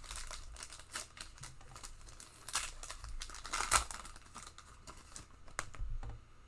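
Foil wrapper of a Panini Contenders football card pack being torn open and crinkled in the hands. The crackling tears are loudest about two and a half and nearly four seconds in.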